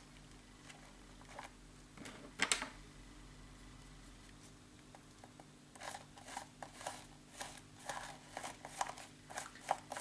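Scratchy scraping and dabbing of a tool working acrylic paint through a plastic stencil onto a paper page: a rapid, irregular run of short strokes begins about six seconds in. Before that there is a single click about two and a half seconds in.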